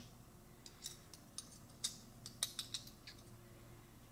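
Light clicks and taps of a bent thin metal plate handled against an Arca-Swiss camera plate as it is fitted over the screw, a scattered series of small hard contacts over about two and a half seconds.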